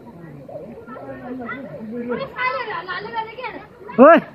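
Several people's voices chattering and calling out over one another, with higher, children's-sounding voices joining in the second half.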